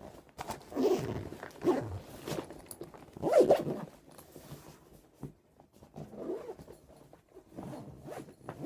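Zipper on a Wilson tennis bag being pulled in several short strokes, loudest in the first few seconds, then quieter handling of the bag.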